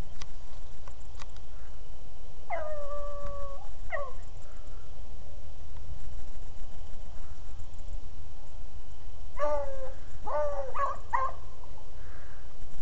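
Beagles baying as the pack works a rabbit's track: one long drawn-out bay about two and a half seconds in, a short one right after, then a run of several quicker bays near the end.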